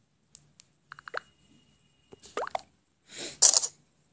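Close-up mouth and breath noises from a person: a few small clicks and smacks, then two short noisy breath bursts, the louder one near the end.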